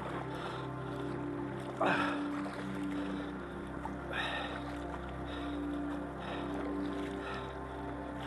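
Kayak paddle strokes, the blade dipping and swishing through the water about once a second, the strongest stroke about two seconds in. Steady background music plays underneath.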